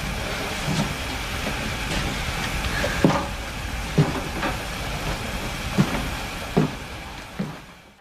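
Steady rumbling noise of a wrecked train carriage, with a scattering of short dull knocks and thuds, fading out near the end.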